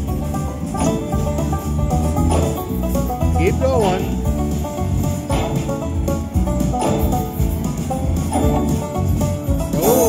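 A Lock It Link Eureka Treasure Train slot machine playing its western bonus music, a banjo-led bluegrass tune with a steady beat. A few sliding sound effects come in over it, one about three and a half seconds in and another near the end.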